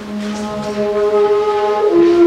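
Replica Southwest desert rim flute, made after the ancient flutes from Broken Flute Cave, playing one long, low, breathy note, then stepping up to a higher note near the end.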